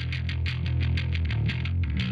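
Distorted electric bass, a Fender Precision through a blend of a Marshall JCM800 amp with a slightly driven Ampeg bass rig, playing a steady stream of quickly picked low notes. The notes move to a new pitch about one and a half seconds in.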